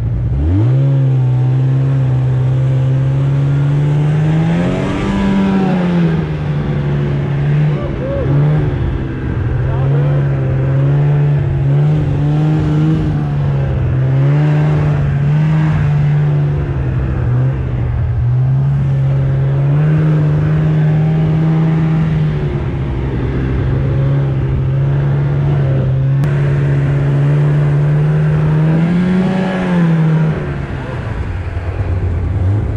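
Arctic Cat 570 two-stroke snowmobile engine opening up sharply from low revs and then running under steady throttle while riding. Its pitch rises briefly about five seconds in and again near the end.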